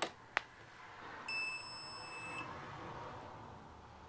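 Two short clicks as the power button of an Anker Solix F3800 portable power station is pressed, then a single steady high electronic beep about a second long as the unit powers on.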